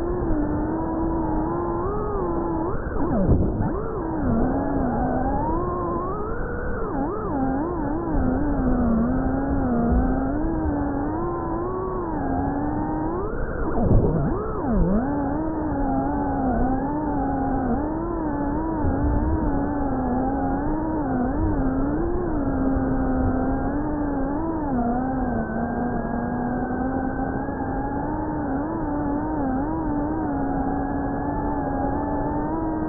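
FPV quadcopter's brushless motors whining, the pitch constantly rising and falling with the throttle. There are sharp drops and swoops about three seconds in and again near the middle.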